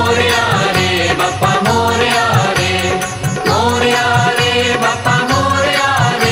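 A Marathi devotional Gauri song playing, with a steady percussion beat under a melodic line.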